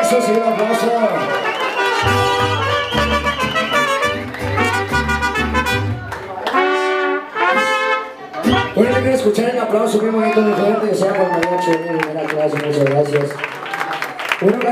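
Mariachi band playing an instrumental passage, trumpets leading over violins, with a low bass line under the first half.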